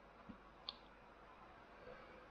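Near silence broken by two faint, short clicks about half a second apart, from a computer mouse.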